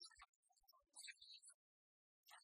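Near silence, with only faint, scattered short blips of sound and a stretch of dead silence near the end.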